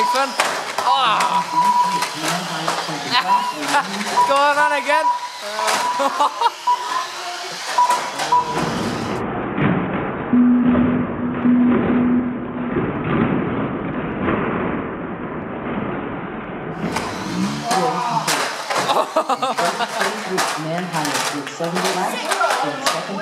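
Chatter of voices in a hall over the clatter and knocks of small 1/12-scale RC banger cars hitting each other and the track barrier. A steady thin whine runs through the first few seconds. Midway the sound turns dull and muffled for several seconds before the clatter and voices return.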